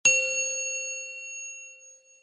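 A single bright metallic chime, a ding sound effect, struck once and ringing out, fading away over about two seconds.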